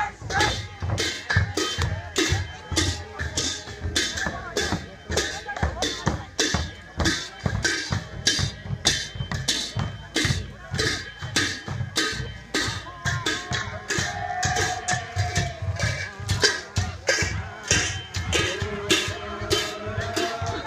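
Sakela dance music: a dhol drum and jhyamta cymbals beating a steady, even rhythm, with voices over them.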